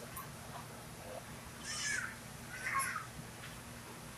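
Steady low hum inside a tram, with two short harsh calls about a second apart.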